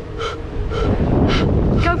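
Rough pan pipes made of reed canes blown in three short, breathy puffs about half a second apart, with a faint hollow note underneath; wind rumbles on the microphone, and a voice says "go" at the very end.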